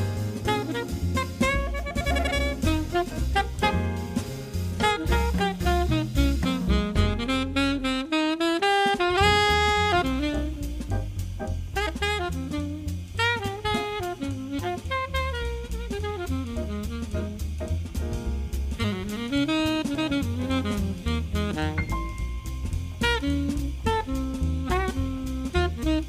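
Live traditional jazz: a saxophone plays the melody over grand piano, upright bass and drum kit, in a swinging blues. About eight seconds in the bass and drums drop out for a moment while the saxophone holds a long note, then the band comes back in.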